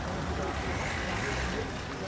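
Busy street traffic: car and motorbike engines running with a steady low rumble, under a haze of street noise. A thin high squeal rises and falls near the middle.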